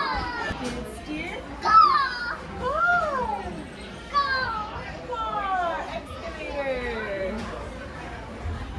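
Young children's high-pitched voices calling and squealing in a string of cries that arch up and down or slide downward, over the general noise of a busy play area.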